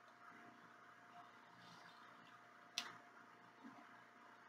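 Near silence: room tone, with one faint short click a little before three seconds in.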